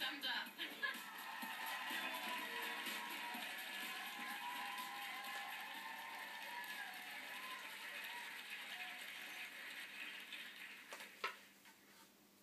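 Music from a television broadcast, heard through the TV's speaker and recorded from the room, with voice-like sound mixed in. Near the end there is a single sharp click, and the sound then drops to a low level.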